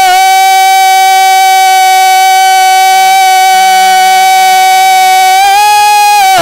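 A man's voice holding one long unaccompanied sung note of a naat through a microphone, loud and steady, beginning to waver near the end as the melody moves on.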